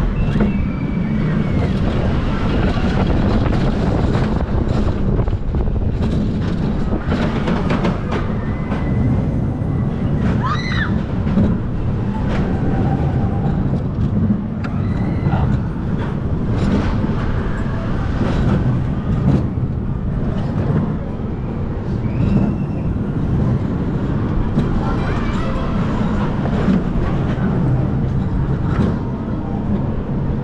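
Mack Rides wild mouse coaster car running along its steel track: a continuous loud rumble and clatter from the wheels on the rails.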